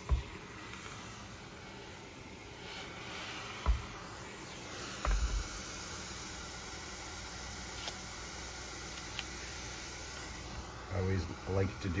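Steamer hissing steadily as steam is played over a comic book's cover to relax the paper before pressing. Two dull knocks from handling come around four and five seconds in.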